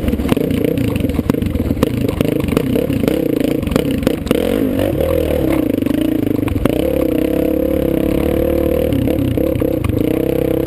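Dirt bike engine running under load, its revs rising and falling as it is ridden along a rocky trail, with knocks and rattles from the rough ground in the first few seconds.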